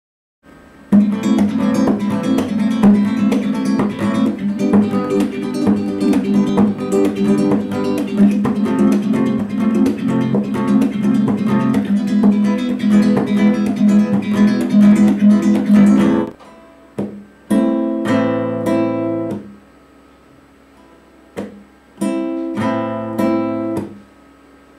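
Nylon-string Spanish guitar playing a rumba strumming pattern, fast and unbroken for about fifteen seconds, then stopping. After that come two short, slower strummed phrases with pauses between them and single sharp knocks in the gaps.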